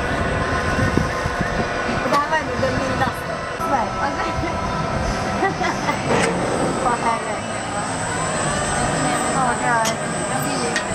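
Steady machine hum with several held tones from a Zamperla Volare flying coaster waiting in its station, with people's voices in the background.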